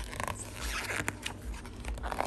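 A glossy page of a hardcover picture book being turned by hand: paper rustling and scraping, with a couple of sharp clicks about a second in.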